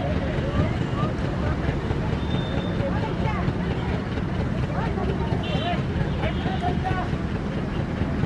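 Terns calling in short, rising and falling notes over a steady low rumble.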